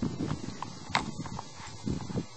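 Scattered clicks and knocks of footsteps and scuffs on wood and bark as people clamber through a hollow tree trunk, the sharpest knock about a second in, over a low rumble.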